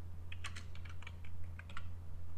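Computer keyboard being typed on: a quick run of key clicks starting about a third of a second in and stopping near the end, over a steady low hum.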